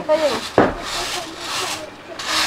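Broom sweeping a dirt yard: a few swishing strokes, with a sharp knock about half a second in.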